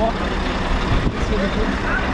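Truck's diesel engine running: a steady low rumble under an even noise.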